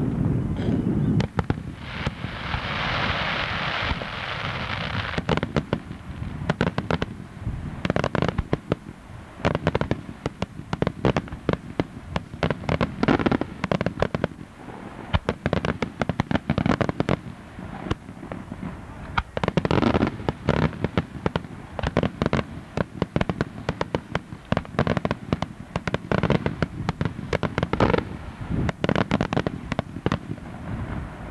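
Daytime aerial fireworks bursting overhead: a few seconds of hiss about two seconds in, then rapid volleys of sharp bangs and crackling reports in clusters.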